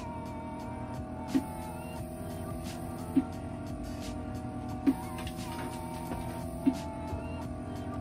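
Vacuum therapy machine running steadily while its suction cups hold on the buttocks, with a short sharp pulse about every two seconds as it cycles the suction. Music plays in the background.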